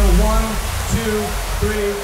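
Breakdown in an electronic dubstep track: the heavy bass fades about half a second in, leaving a noisy wash and short, stop-start pitched vocal or synth fragments, with a sampled voice counting "three" near the end.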